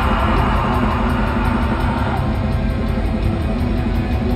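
Live rock band playing loud through a concert hall's PA, heard from the audience: guitars, bass and drums, with a bright note held for the first couple of seconds.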